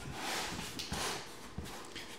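Rustling of cardboard and packaging being handled, with a few light knocks in the second half.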